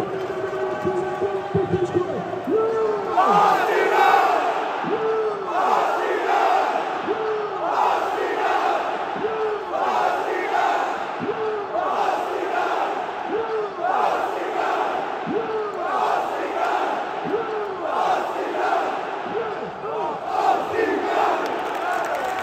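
A large football crowd of home ultras chanting in unison. A couple of seconds of sustained singing gives way to a mass rhythmic shout, repeated about every second and a half, from fans punching their fists in the air.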